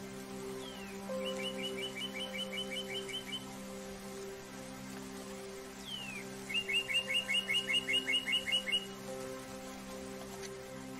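Soft spa music of sustained, held tones, with a songbird over it singing twice: each phrase a short falling slur followed by a rapid trill of about a dozen chirps lasting a few seconds, the second phrase louder.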